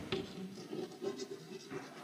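Chalk scratching on a blackboard as a word is handwritten: a faint, irregular run of short strokes.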